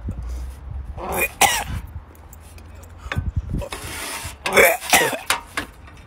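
A man coughing and clearing his throat in two short bouts, gagging at the stench of opened surströmming (fermented herring), with a dull knock in between.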